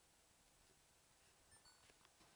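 Near silence: faint room tone, with a few faint short ticks near the end.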